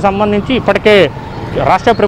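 Speech: a man reporting in Telugu, talking without a pause.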